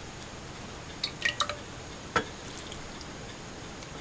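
A few faint drips of hot sugar syrup falling into a glass canning jar of sliced peaches just after filling: light ticks about a second in and one sharper tick a second later, over a quiet background hiss.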